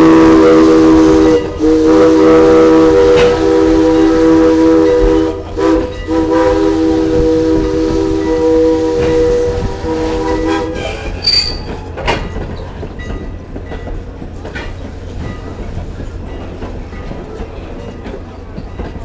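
A steam locomotive's chime whistle sounds long, loud blasts, with short breaks about a second and a half in and again around five seconds in, and stops about eleven seconds in. After that the train is heard rolling on the rails, more quietly, with a brief high squeal soon after the whistle stops.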